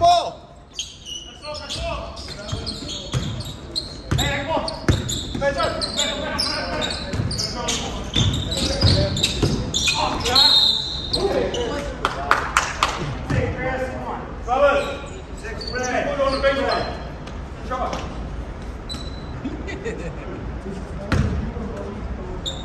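Basketball bouncing on a gym floor during play, with players' shouts and calls between the bounces.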